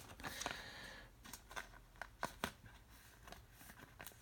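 Faint handling of a stack of thick, glossy chromium trading cards in the hands: a soft sliding hiss in the first second, then a string of light, sharp clicks as card edges are moved through the stack.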